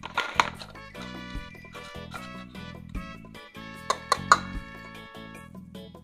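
Background music, with two clusters of sharp plastic clacks, one just after the start and one around four seconds in: hard plastic toy pizza slices being handled and knocked together.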